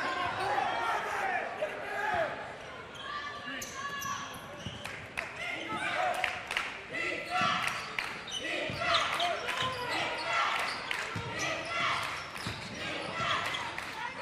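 A basketball being dribbled on a hardwood gym floor, a run of short sharp bounces in the second half, under voices echoing in a large gym.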